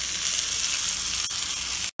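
Chicken thighs frying in butter and olive oil in a skillet, sizzling steadily as orange juice is poured in over them. The sizzle cuts off suddenly near the end.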